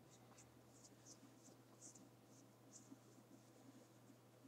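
Near silence: faint, irregular soft scratching strokes, roughly two a second, over a low steady hum.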